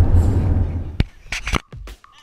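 Low, steady car cabin road rumble for about a second, then it cuts off and a background music track starts with sharp percussive hits.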